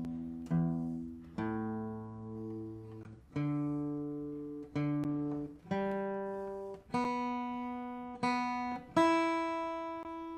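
Acoustic guitar being tuned: single strings plucked one at a time, about eight notes at several different pitches, each left to ring and fade before the next.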